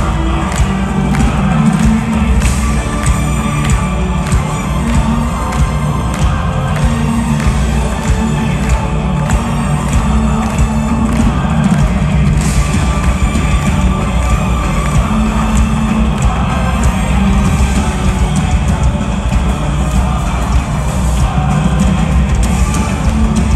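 A heavy metal band playing loud and without pause through a festival PA, with vocals over distorted guitars and drums, recorded from inside the crowd. The crowd is cheering and shouting along.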